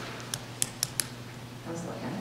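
Four light, sharp clicks in quick succession in the first second, then a quieter stretch, over a steady low hum.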